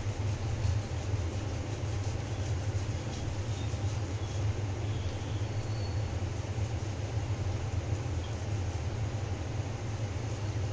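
A steady low hum runs throughout, with soft scraping of boiled potato being grated on a stainless-steel box grater.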